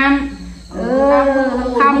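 A woman speaking a blessing in a sing-song voice. After a brief dip about half a second in, she holds one long, drawn-out vowel for about a second.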